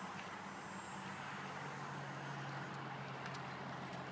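A motor vehicle engine running steadily with a low hum, its pitch stepping down slightly about a second in.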